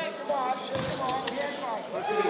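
Wrestling shoes squeaking on the mat in short chirps as two wrestlers grapple and shift their feet, with a dull thud about three quarters of a second in.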